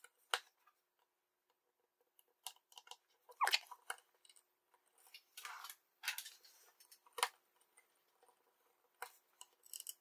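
Small handling noises from soldering at a bench: scattered clicks and taps as a circuit board, its wires and a soldering iron are moved about on a cutting mat, with a few short hissy rustles, the loudest about three and a half seconds in.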